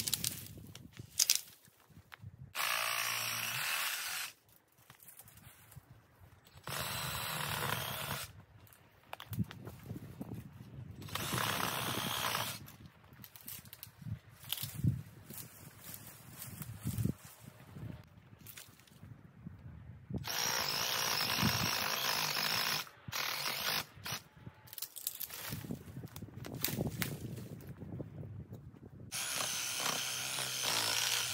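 A power saw cutting partway into small trees for hinge cuts, in about five steady bursts of one to three seconds with pauses between. Scattered cracks and rustles of brush fill the gaps between cuts.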